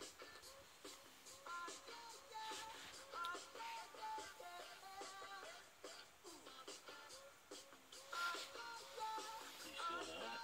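Faint music with a melody playing from a radio.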